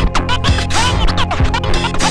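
Turntablist scratching a 45 rpm vinyl record, the record pushed back and forth to make quick rising and falling pitch sweeps, chopped into short cuts with the mixer's crossfader over a steady beat.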